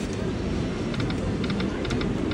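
Dragon Cash slot machine giving a quick run of short high electronic ticks in the second second as a spin plays out, over a steady casino-floor din.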